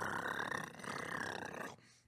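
A man imitating an approaching helicopter with his mouth: a steady, breathy rumbling noise that dips briefly under a second in and cuts off near the end.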